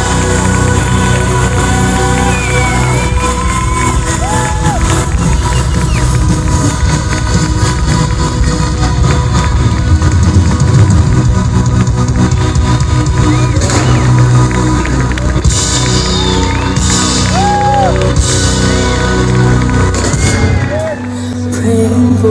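Live band playing loud, bass-heavy music while the audience cheers and whoops. The cheering swells a few times, and the band's low bass cuts out about a second before the end.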